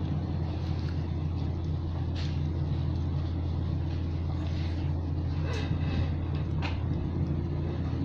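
Steady low hum of an electric standing fan running, with a few light clicks of a plastic spoon against a food container.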